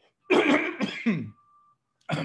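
A man coughing and clearing his throat: two rough bursts in the first second and a half.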